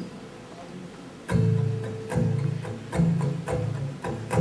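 Acoustic guitar strumming chords, with cello underneath, as the introduction of a song played live. It is quiet for about the first second, then the chords are struck about once a second.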